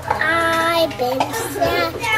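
A toddler singing wordlessly in a sing-song voice: one held note for most of the first second, then a few shorter notes.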